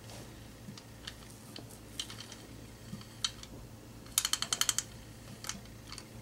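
Light, scattered clicks from a valve spring compressor being handled and worked, with a quick run of about eight sharp clicks a little past the middle.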